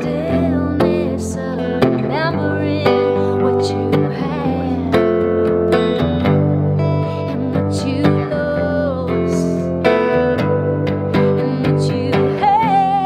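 A 1956 Silvertone U2 electric guitar on its neck pickup, played through a Fender Deluxe Reverb amp, strumming chords with a strong strum about once a second.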